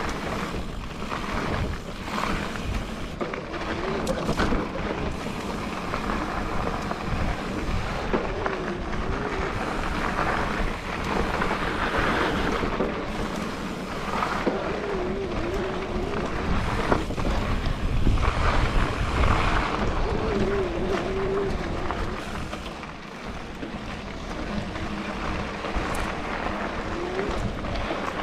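Mountain bike ridden fast down a rough dirt singletrack, heard from the rider's own camera: steady wind rush on the microphone, with tyre noise on dirt and the bike rattling and knocking over bumps.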